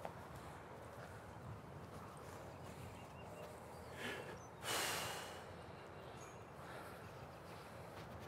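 Quiet outdoor ambience, with a brief hiss lasting about half a second just before the halfway point.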